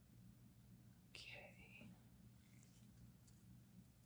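Near silence: a low steady hum, with a brief faint whisper about a second in.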